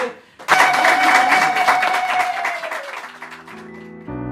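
A group of people clapping and applauding, with a long held high-pitched tone over the clapping that fades out about three seconds in. Near the end, quiet low musical notes begin.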